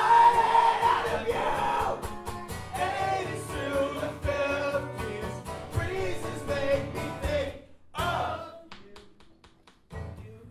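Male voice singing over a strummed acoustic guitar. The song drops away after about seven and a half seconds, with one short loud burst at about eight seconds, followed by a few light, quick strums.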